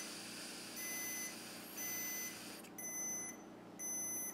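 Handheld AlcoHawk breathalyzer beeping about once a second while a man blows a steady breath into its mouthpiece. The blowing stops about three seconds in, and the beeps keep going as the unit takes its reading.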